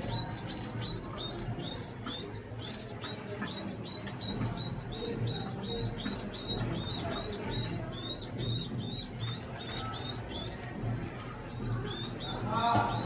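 Pigeon squabs begging with quick, high squeaks, about three a second, while the parent pigeon feeds them crop milk beak-to-beak.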